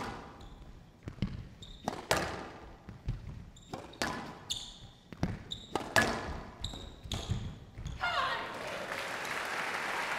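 Squash rally in a glass-walled court: the ball cracks off rackets and walls every second or so, each hit echoing in the hall, with short high squeaks of shoes on the court floor. The rally ends and the crowd applauds from about eight seconds in.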